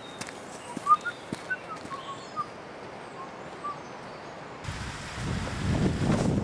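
Outdoor ambience with faint, short bird chirps and a few soft knocks in the first seconds. Near the end, wind on the microphone rumbles in and builds.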